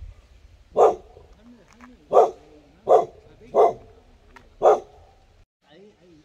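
A dog barking five times: one bark about a second in, then four more, spaced a little under a second apart.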